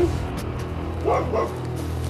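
Background music with a low steady drone, and two short dog barks close together about a second in.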